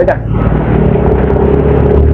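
Motorcycle engine running steadily at cruising speed, with road and wind rush over it.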